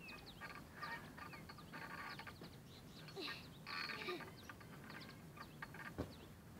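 Faint outdoor ambience with small birds chirping in many short, quick calls, and a few brief louder calls about two, three and four seconds in.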